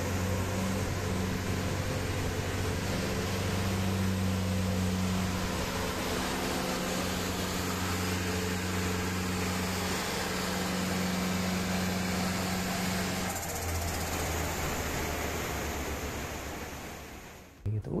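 Turbocharged four-cylinder engine of a Peugeot 306 running at a steady speed on a dyno, with air rushing over it, heard as a constant low hum and a broad hiss; about 13 seconds in the hum shifts as the higher part of it drops away.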